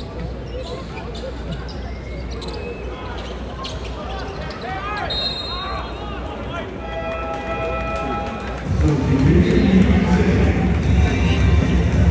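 Basketball arena ambience: crowd murmur with short clicks, squeaks and bounces from the court. A steady held tone sounds for about a second and a half around seven seconds in. Then loud arena PA music with a heavy beat starts about nine seconds in.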